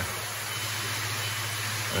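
Steady low hum with an even hiss, the continuous background of a koi pond's pumps and moving water.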